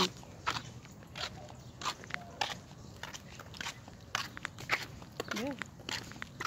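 Footsteps on a concrete sidewalk, light steps about two a second, mixed with the knocks and rubbing of a phone carried in the hand while walking.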